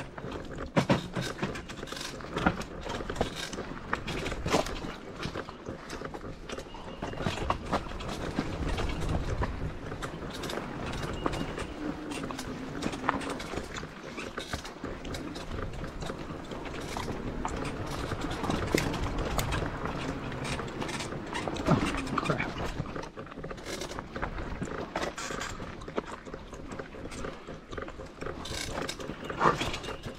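Cyrusher XF900 fat-tire e-bike jolting slowly over rocks and roots on a technical trail descent: irregular knocks, clatters and rattles from the tires, frame and drivetrain.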